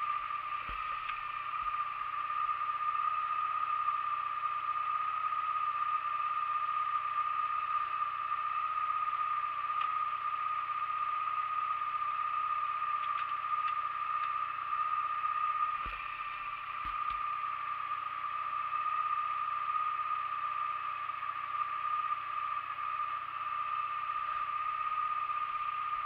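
Motorcycle engine idling steadily, with a steady high whine over a low hum. There are a few short thumps about sixteen seconds in.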